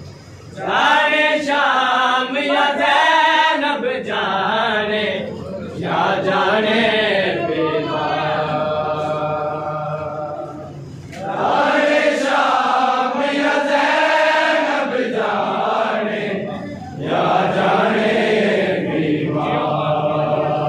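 Men's voices chanting a noha, a Shia mourning lament, in four long melodic phrases with short breaks between them.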